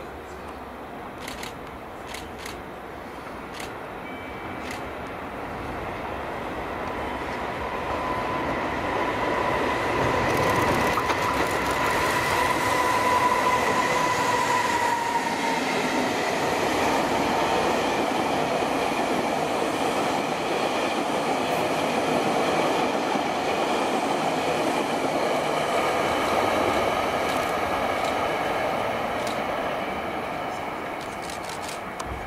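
Electric locomotive hauling a rake of unpowered Tobu 500 series Revaty cars past at close range. The rolling noise of wheels on rail builds up over the first ten seconds and stays loud, with a steady high squeal for several seconds around the middle.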